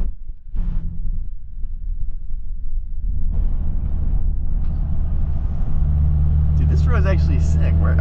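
Audi car's engine and tyre noise heard from inside the cabin while driving. The drone grows louder about three seconds in and settles into a deep, steady hum in the second half. A voice comes in near the end.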